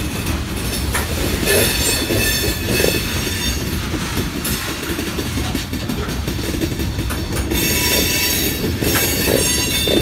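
Freight train of covered hopper cars rolling past, a steady rumble of wheels on rail with occasional clacks. A high-pitched wheel squeal rises over it about a second and a half in and again near the end.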